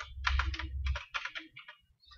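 Typing on a computer keyboard: a quick run of about a dozen key clicks, some of them the Enter key and brace keys, with a low rumble under the first second.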